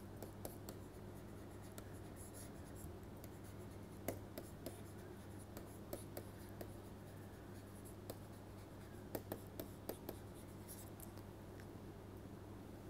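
Stylus writing on a tablet screen: faint irregular taps and scratches as the letters are drawn, over a low steady hum.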